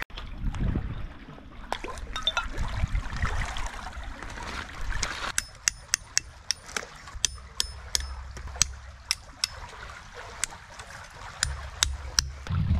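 Hatchet chopping a small piece of wood into kindling: a run of sharp knocks, about two or three a second, starting about five seconds in.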